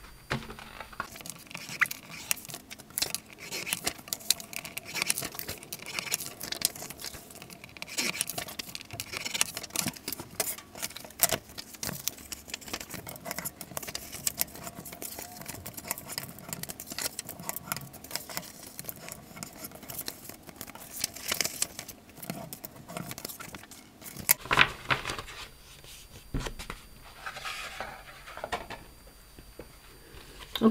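Cardstock pages being scored and folded in half, with a bone folder rubbed along the creases: an uneven run of paper rustles, scrapes and light taps.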